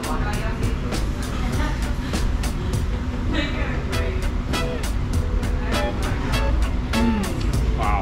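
Upbeat background music with a steady beat, laid over faint voices and low room rumble.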